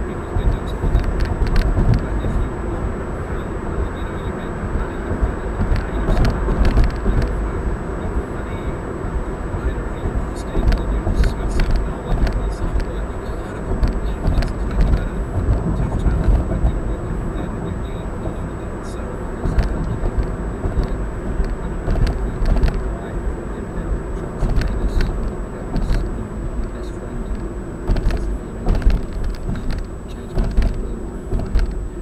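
Steady road noise inside a moving car: tyres on asphalt and engine rumble at highway speed, with scattered small clicks or rattles.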